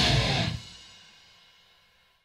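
The end of a heavy metal song: guitars, drums and cymbals stop about half a second in, and the last chord dies away to silence over the next second.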